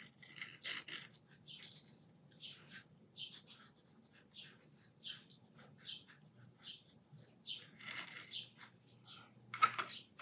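Metal dip-pen nib scratching across paper in short, faint strokes, about two a second, as ink lines are drawn. Near the end there is a single louder knock.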